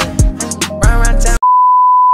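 Hip-hop music with a beat plays and cuts off abruptly about one and a half seconds in. It is replaced by a single steady, loud test-tone beep of the kind that goes with TV colour bars.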